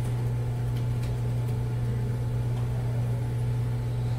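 A steady low-pitched hum that runs unchanged, with a few faint, scattered ticks over it.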